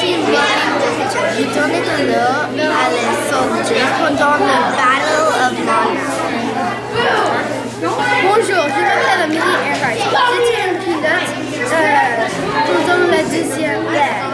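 Crowd chatter in a large hall: many voices, mostly children's, talking over one another at once, over a steady low hum.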